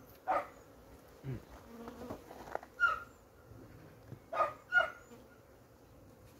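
A dog barks a few short times, over a faint low hum from an opened honeybee hive in winter.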